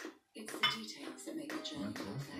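Metal spoons clinking and scraping against plates and bowls while eating, a string of small clicks that starts a moment in.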